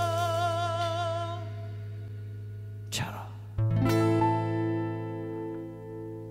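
Live band music. A sung note held with vibrato fades out over a sustained bass note. About three seconds in there is a short swish, then a new chord is struck on bass guitar and keyboard and left ringing.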